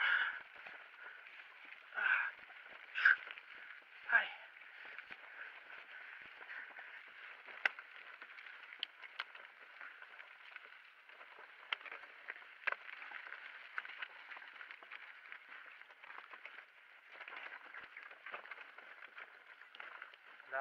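Mountain bike rolling down a rocky dirt trail, heard through a handlebar camera's microphone: a steady rolling noise with scattered sharp clicks and rattles as it crosses stones, and three short louder sounds in the first four seconds.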